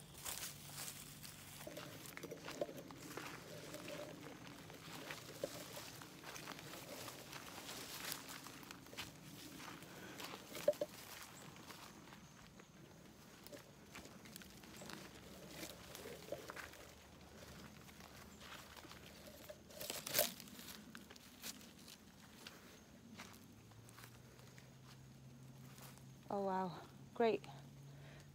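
Faint footsteps and rustling through forest undergrowth, with scattered small knocks and clicks. A few short spoken bursts come near the end.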